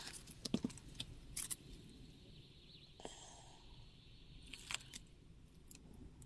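Faint handling sounds: a few light, scattered clicks and taps as gloved hands turn a clear cast-resin piece.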